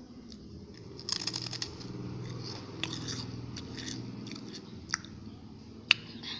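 Bim bim snack chips dipped in fish sauce being bitten and chewed close to the microphone: a burst of crackly crunching about a second in, then chewing with scattered crunches. A sharp click near the end is the loudest moment.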